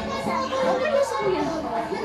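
Children's and adults' voices talking over one another.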